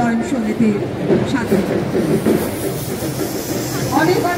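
Train running, a steady rumble and rattle, with people's voices in the first second.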